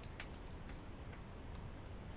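Fingers squishing and working a wet flour-and-water sourdough biga in a plastic bowl, faint, with a few small clicks.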